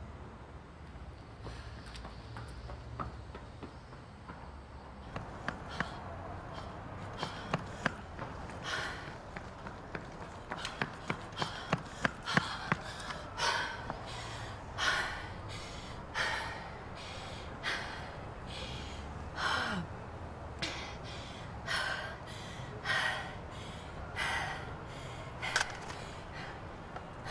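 A woman running on a pavement, her footsteps getting louder as she comes closer, then heavy panting, one breath about every second.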